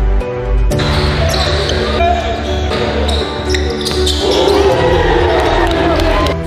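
Background music with basketball game sound mixed in from about a second in: a ball bouncing on a gym floor and players' voices, building to shouting and cheering from the bench near the end.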